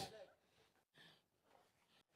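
Near silence, just after a spoken word fades out at the very start.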